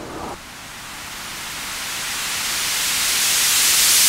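Synthesized white-noise riser in a dubstep track: a hiss that swells steadily louder and brighter, the build-up sweep before a drop.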